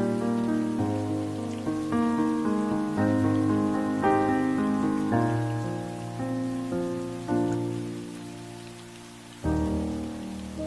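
Slow, gentle music of held chords, each struck and then fading, over a steady hiss of rain. Near the end the music dies down, then a new chord strikes.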